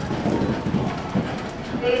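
Barrel-racing horse galloping on soft arena dirt: dull hoofbeats, a few to the second.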